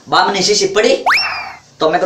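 Cartoon-style comic 'boing' sound effect about a second in: one quick upward slide in pitch that then eases slowly down. Brief speech comes just before it.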